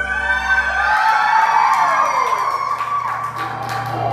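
Live rock band playing held electric guitar and keyboard notes over a sustained low bass note. About a second in, one note slides steadily down in pitch over a second or so.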